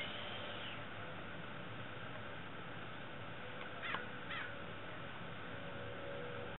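A bird calls twice in quick succession, two short downward-gliding calls about half a second apart, about four seconds in. Steady outdoor background hiss runs underneath.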